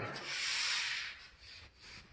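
A rubbing, hissing noise that lasts about a second and fades, then a faint tail.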